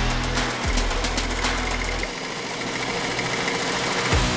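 Background music with a beat, its bass dropping out about halfway through. Under it runs a multi-needle embroidery machine stitching.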